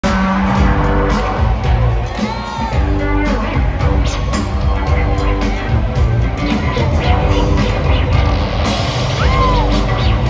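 Live rock band playing full out, drums, electric guitars and keyboards, heard from among the audience in a large hall. A few rising-and-falling whoops or whistles from the crowd cut through, once a couple of seconds in and again near the end.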